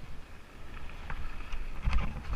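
Lapierre Spicy 327 mountain bike rolling down a dry dirt trail: tyre rumble and rattling of the bike, with wind on the microphone. A couple of sharp clicks about a second in and near the end.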